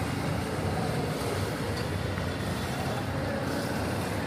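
Steady road traffic noise from passing cars and motorbikes, an even background rumble with no distinct events.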